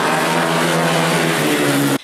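Ice speedway motorcycle's 500 cc single-cylinder racing engine running hard at high revs, its pitch holding nearly steady.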